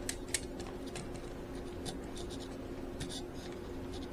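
Faint scratching and small clicks of fingers working a tiny wire plug into the flight control board of a foam RC plane, over a steady low hum.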